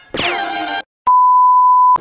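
A squeaky cartoon sound from the TV sliding down in pitch, then after a short gap a loud, steady electronic beep of one pure tone lasting about a second, like a censor bleep, that stops abruptly.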